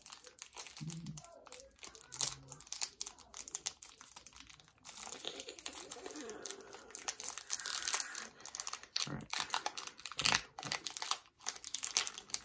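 Foil wrapper of a Pokémon Brilliant Stars booster pack crinkling as it is torn open and the cards are handled: a dense run of sharp crinkles, busiest about halfway through.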